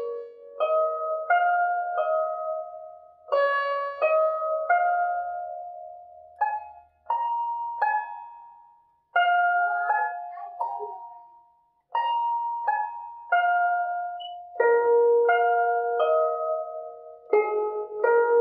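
A guzheng (Chinese zither) played slowly and haltingly by a beginner. Single notes are plucked one at a time with fingerpicks, and each rings and fades away. The playing stops briefly twice, with the notes dying out before it resumes.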